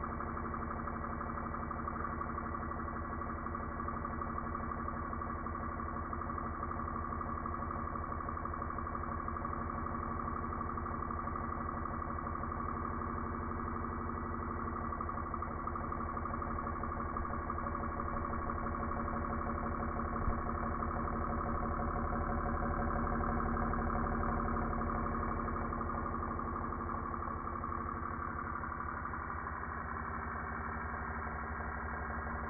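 Small electric motor mounted on a plywood board, running steadily with an even hum and fast pulsing, swelling slightly near the end, with one short click partway through.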